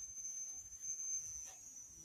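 Faint room tone in a pause in speech, with a thin steady high-pitched electronic whine running through it.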